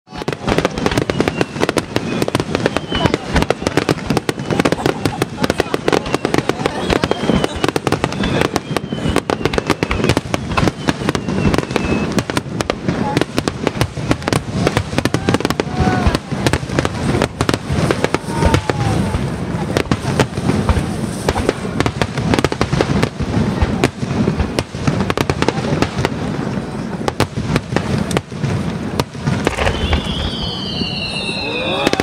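Aerial fireworks display: a dense, unbroken barrage of shell bursts, bangs and crackling.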